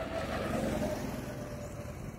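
A go-kart's small engine running steadily, a low even hum with a faint steady tone.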